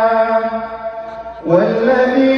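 A male qari's voice in Quran recitation, drawing out a long, steady melodic note at the close of a verse (the elongated ending of 'mataba'). The note fades about a second in, and just before the end he starts the next verse on a rising pitch.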